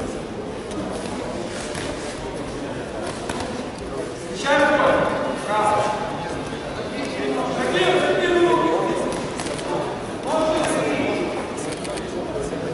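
Voices shouting in a large echoing hall over a steady murmur of crowd talk: four loud calls, about four and a half, five and a half, eight and ten and a half seconds in, the third one drawn out over more than a second.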